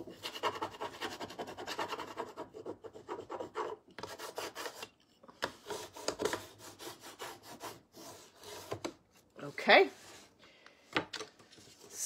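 Applicator tool rubbed back and forth over a rub-on décor transfer, burnishing the design onto the surface: a fast scratchy rasping of short strokes. The strokes come densely for the first few seconds, then more sparsely.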